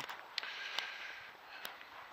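A quiet pause with a faint steady hiss and a few soft, separate clicks; the buggy's engine is not running.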